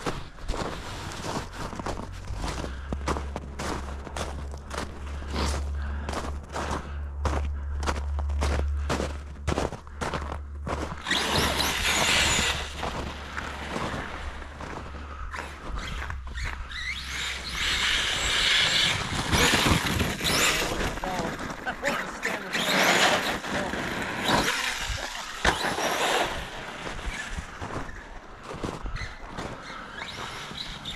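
Footsteps crunching through snow, about two steps a second, for the first ten seconds. Then an electric brushless-motor RC truck, an Arrma Kraton 6S, whines in repeated bursts of throttle, with its tyres working over an icy, snow-covered driveway.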